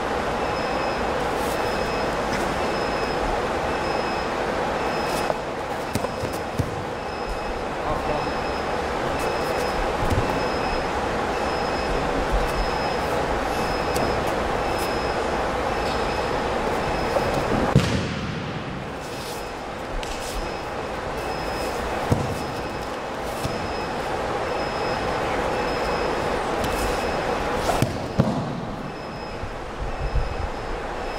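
Steady machine hum with a faint high beep repeating about every half-second, broken by the thud of a body falling onto a gym mat about 18 seconds in and again near the end.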